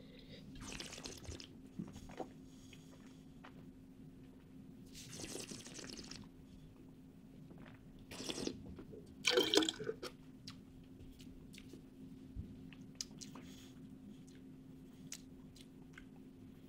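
A person sipping red wine to taste it: a few short, soft slurps and breaths as air is drawn through the mouthful, with small wet mouth sounds, over a faint steady hum.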